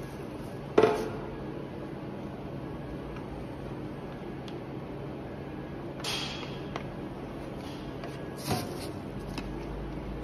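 Metal powder trays and a scraper plate knocking and scraping as loose cosmetic powder is filled into a press tray by hand: a sharp knock about a second in, a brief scrape in the middle and another knock near the end, over a steady low hum.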